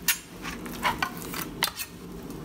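Chef's knife cutting into a whole branzino behind the head: a few short scraping clicks of the blade against the fish and the plastic cutting board.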